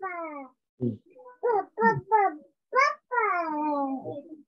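Several voices one after another repeating a drawn-out word with falling pitch, the last one held longest near the end: students echoing "need" in a pronunciation drill over a video call.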